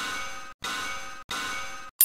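Three metallic clanging sound-effect hits, one about every two thirds of a second, each ringing briefly and then cut off short, marking each line of an on-screen title as it appears.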